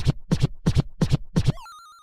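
Hip-hop turntable scratching in a transition music bed, a quick run of about five scratches a second that stops about one and a half seconds in. A faint, high, warbling electronic tone follows and fades out.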